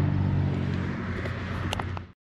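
Yamaha MT-07's parallel-twin engine running at a steady, even pitch, easing off slightly in level, with a couple of short clicks near the end.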